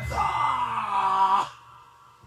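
A man's voice holding one long drawn-out vowel without a break, then stopping abruptly about a second and a half in.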